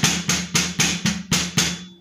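Wooden drumsticks striking a rubber practice pad in a right-left-double sticking exercise (R L RR L RR L), about four even strokes a second, with a low ring under the hits; the strokes stop near the end.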